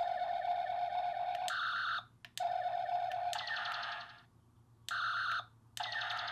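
Electronic phaser sound effects from a Star Trek phaser prop: about four bursts of pulsing beeping tone, each under a second to about two seconds long, with short gaps between them. Two of the bursts end in a falling tone.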